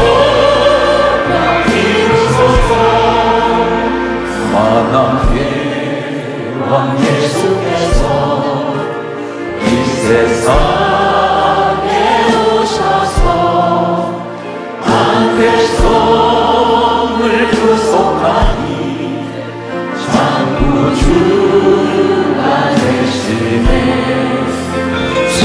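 A mixed praise team of men and women singing a Korean worship song together, backed by a live band with keyboard, bass and drum hits.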